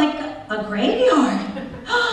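A person's voice, vocalising with chuckling.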